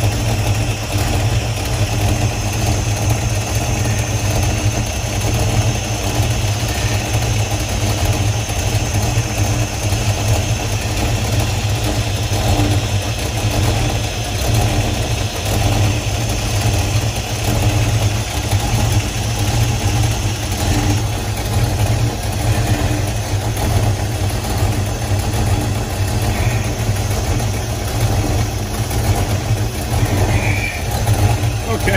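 Ford V8 engine idling steadily, heard up close from the open engine bay.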